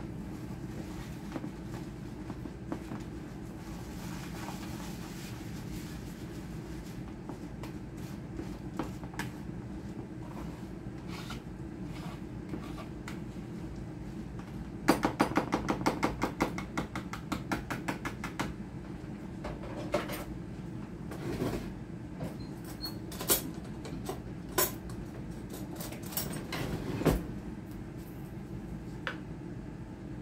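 Wire whisk stirring oat and banana cookie batter in a bowl, clicking quickly against the bowl for a few seconds about halfway through, then several separate knocks, over a steady low hum.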